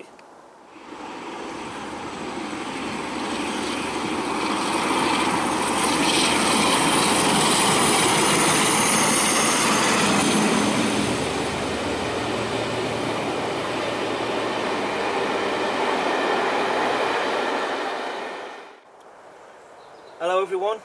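Full-size loco-hauled passenger train passing at speed: a continuous rumble and rush of wheels on rail that swells over several seconds, is loudest around the middle, and fades out shortly before the end.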